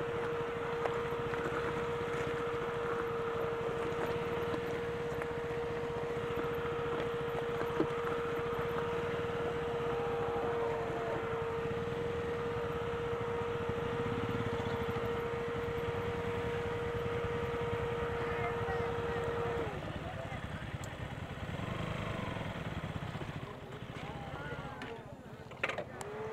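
Royal Enfield Himalayan's single-cylinder engine running as the bike is ridden slowly, with a steady whine over the rumble. It winds down and stops about twenty seconds in, leaving faint voices in the background.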